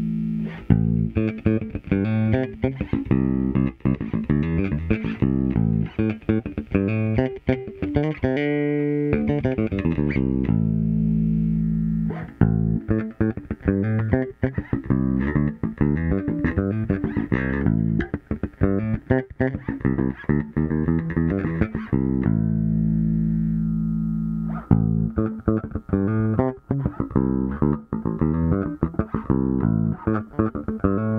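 Sire V3 jazz bass played fingerstyle through a Lusithand NFP filter-based preamp: busy runs of plucked notes broken by several long held notes, with a note sliding in pitch about eight to nine seconds in.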